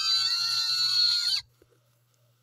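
Several shrill, high-pitched voices screaming together with wavering pitch, cutting off suddenly about a second and a half in.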